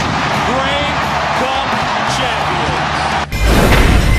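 Excited voices and celebration noise over a steady music bed. About three seconds in, a loud whoosh-and-slam transition sound effect cuts in, opening a countdown graphic.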